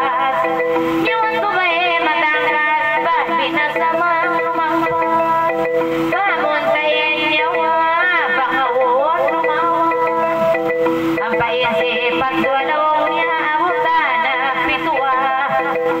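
A woman singing a Tausug kissa (narrative song) into a microphone in a wavering, ornamented voice. She is accompanied by an electronic keyboard playing sustained notes and a xylophone-like mallet part in gabbang style.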